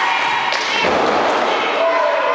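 A wrestler's body is slammed onto the ring mat, with one heavy thud a little under a second in. Crowd voices are shouting throughout.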